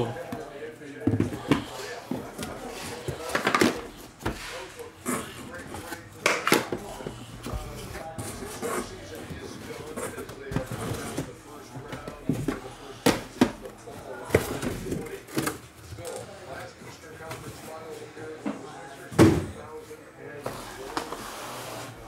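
Cardboard card boxes being handled, opened and set down on a table: irregular taps, scrapes and knocks, with a few louder thumps, the loudest about nineteen seconds in.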